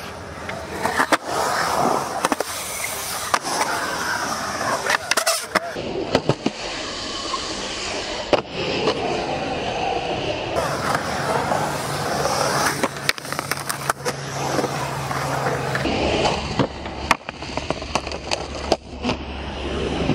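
Skateboard's urethane wheels rolling and carving on the concrete of a skatepark bowl, a continuous rolling noise that swells and fades as the board moves through the transitions. Sharp clacks and knocks of the board's impacts break in many times.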